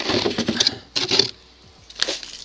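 Frozen food containers rustling and scraping in a freezer drawer as they are handled and pulled out, in two short bursts about a second apart.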